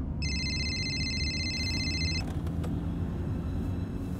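Low, steady rumble of a moving car heard from inside the cabin. A mobile phone rings with a high electronic ringtone of several steady pitches, starting just after the start and stopping after about two seconds.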